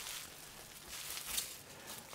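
Faint rustling and crinkling of plastic bubble wrap being handled.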